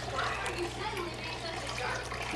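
Children's voices talking faintly in the background over a steady low hum.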